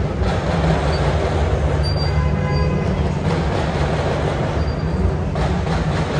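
Busy city street traffic: engines of cars and double-decker buses running in a steady low rumble, with a brief faint squeal about two seconds in.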